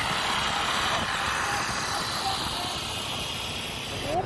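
Steady traffic noise from riding motor scooters along a city street: a continuous rush of engine and road noise.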